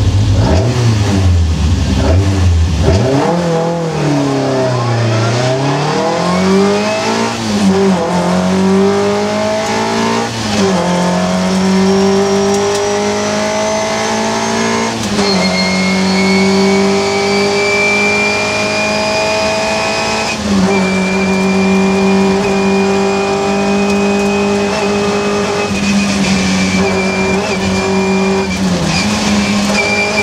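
Rally car engine heard from inside the cabin, pulling away from a standstill and accelerating hard through the gears. The revs climb, drop briefly at each of several gear changes, then stay high, with a thin high whine running alongside in the second half.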